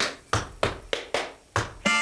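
Tap shoes striking a wooden tap board in a short syncopated tap-dance break: about six sharp taps in two seconds, each dying away quickly.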